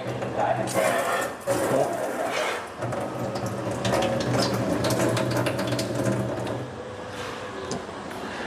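Water spraying from a kitchen sink tap into the sink, a steady hiss with spattering, over a steady low mechanical hum.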